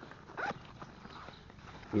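Quiet rustling and handling of a nylon MOLLE bag as its pockets are held open, with one short squeak that glides in pitch about half a second in.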